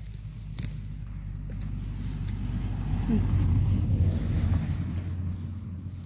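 A motor vehicle's engine and tyre rumble swelling to a peak in the middle and fading again as it passes, with a couple of light handling clicks near the start.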